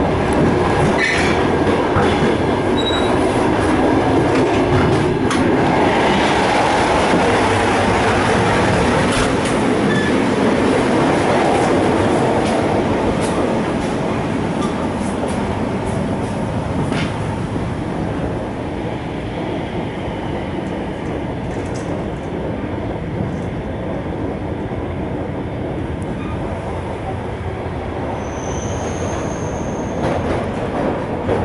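Steady running noise of an ER2K electric multiple unit heard from inside the passenger carriage: the rumble of wheels on rail, with occasional knocks. It is louder through the first half and eases a little after about fourteen seconds, with a short high squeal near the end.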